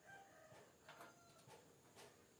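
A faint, drawn-out animal call during the first half second or so, with a few light clicks and taps from hands working on a metal PC case.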